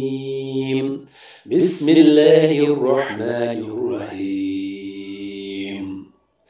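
A male reciter chanting the Quran in Arabic, melodic and drawn out with long held notes, with a short pause for breath about a second in.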